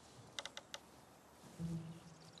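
Four quick, sharp clicks about half a second in, then background music starting near the end with low held tones.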